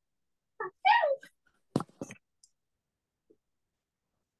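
A short voice-like call about a second in, falling in pitch, followed by two sharp clicks.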